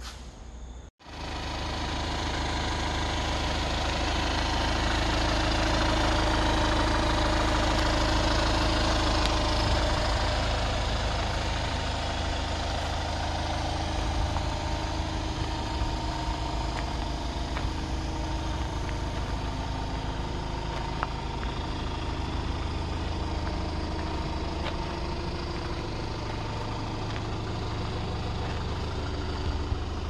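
Hyundai Grand Starex van engine idling steadily, with a brief cut-out about a second in.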